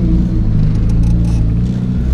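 Turbocharged Nissan KA24DE 2.4-litre four-cylinder engine in a 240SX running at a steady, moderate speed while driving, heard from inside the cabin as a steady low hum.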